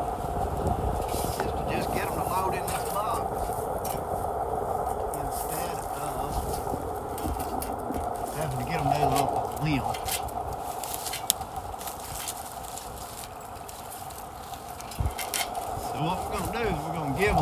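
Scattered clicks and knocks of a steel ladder stand being handled against a tree trunk, one sharper knock about eleven seconds in, over a steady hum. Some muffled talk comes in around the middle.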